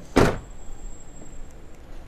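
The side-hinged rear door of a 2000 Toyota RAV4, with its spare wheel mounted on it, slammed shut with a single thud a moment after the start.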